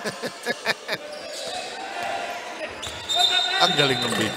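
A basketball bouncing on a hardwood court, several quick dribbles in the first second, with crowd voices in a large hall. Near the end a referee's whistle blows a steady high note, calling a traveling violation.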